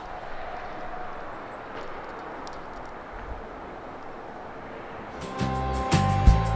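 Steady outdoor background noise, an even hiss with no distinct events, as the camera is carried outside. About five seconds in, background music with strummed guitar starts.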